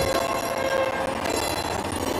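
Several steady horn-like tones sounding together as a held chord, the pitches shifting every second or so.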